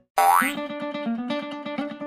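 Playful background music: a brief rising swoop sound effect, then a bouncy plucked-string tune.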